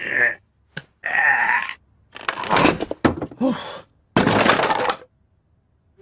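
A flat-pack wooden cabinet breaking apart, its panels cracking and clattering down in several separate crashes, with a man's grunts and groans between them.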